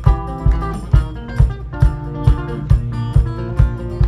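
Live rock band playing: guitar chords ringing over a drum kit keeping a steady beat of about two kicks a second.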